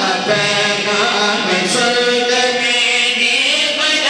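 A group of men chanting a devotional refrain together into microphones, with long held, wavering notes.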